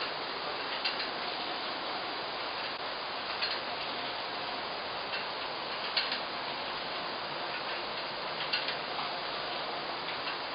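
Working watermill: a steady rushing noise of the water-driven mill, with light sharp ticks from its machinery every second or two at uneven intervals.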